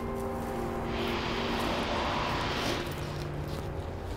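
A vehicle passing by: a rush of noise that swells and fades over about two seconds, over a steady low hum.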